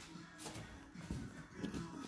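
Faint handling noises, a few soft clicks and rustles, as a dismantled plastic headlight switch is picked up and turned in the fingers.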